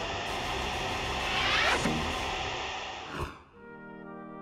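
Vacuum cleaner running as a steady whooshing noise, with a rising sweep about one and a half seconds in, dying away near the three-second mark. A background music bed plays throughout and carries on alone at the end.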